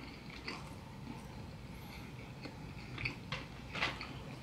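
Faint chewing: a person eating with their mouth closed, with a few soft mouth clicks scattered through it.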